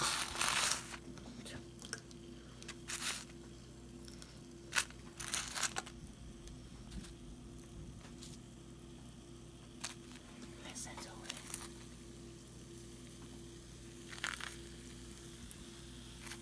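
Effervescent tablets fizzing faintly in glasses of oil and food-coloured water. Several brief crinkling, rustling handling noises sound over the fizz, and a steady low hum runs underneath.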